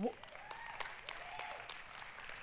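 A congregation applauding lightly, with many scattered claps and a few faint voices calling out.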